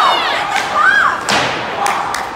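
A single hard thud from play in an ice hockey game, a little past halfway, with spectators shouting before it.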